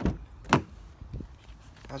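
A Kia Cee'd hatchback's driver's door being unlatched and opened: two sharp clicks about half a second apart, the second the loudest, then a fainter knock.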